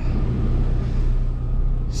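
Kenworth T680 semi truck's diesel engine idling, heard from inside the cab as a steady low hum.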